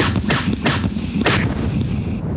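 A rapid series of explosion-like bangs, four in about two seconds, over a continuous low rumble: a dynamite-blast sound effect.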